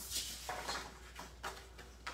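Paper and cardstock rustling and sliding on a craft mat as a designer-paper panel and card base are handled, with a few light taps.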